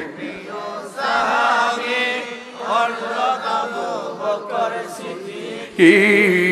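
A congregation chanting a sung devotional refrain together in call-and-response, in phrases about a second long, fainter than the amplified lead voice that returns just before the end.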